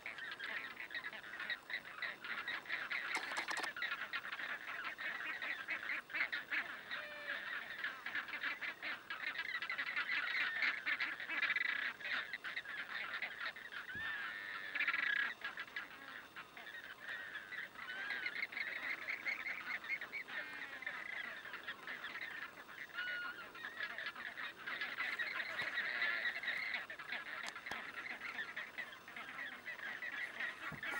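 A flock of flamingos calling: a continuous din of many overlapping honking calls, with single clearer calls standing out here and there.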